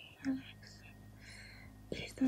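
Soft whispering and breathy sounds from a voice close to the microphone, with a faint steady low hum underneath.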